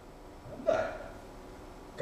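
One short, abrupt vocal catch of breath from a person, about two-thirds of a second in, against otherwise quiet room tone.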